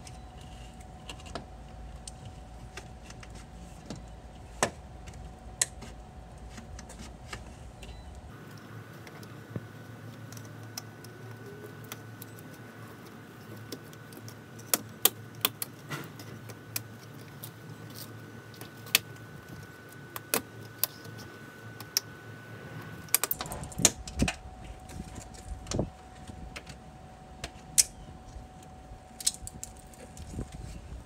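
Plastic retaining clips and the inner window frame of an RV door clicking and snapping at irregular intervals as the frame is pried loose from the outer frame. The clicks come thickest just before the frame comes free, over a steady hum.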